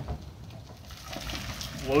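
Faint rumble of a two-wheeler hand truck's wheels rolling over wet asphalt under an empty IBC tote, with a light knock or two from the tote's metal cage.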